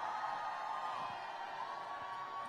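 Distant amplified sound from a far-off public-address loudspeaker, thin and muffled, with a held pitched voice or music line drawn out across the two seconds.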